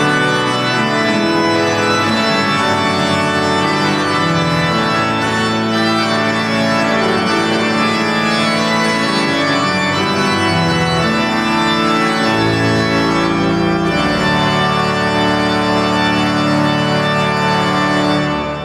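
Church pipe organ playing the closing voluntary after the blessing: full, sustained chords moving from harmony to harmony.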